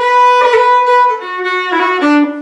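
Fiddle playing a short phrase of a lilting Irish jig in B minor, ornamented with a long roll: a long first note held for about a second, then shorter notes stepping down in pitch.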